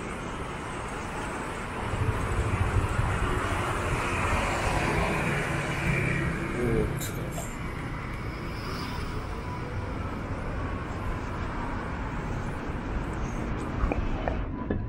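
Street traffic running by on a city road, with one vehicle passing loudest between about two and seven seconds in, then a steadier background.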